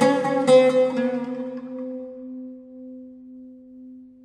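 Music played on a plucked string instrument: strummed strokes in the first half second, then a low note left ringing and slowly dying away.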